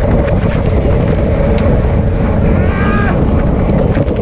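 Loud, steady wind buffeting an action camera's microphone on a road bike at sprint speed, around 35 mph. A brief higher-pitched sound cuts through about three seconds in.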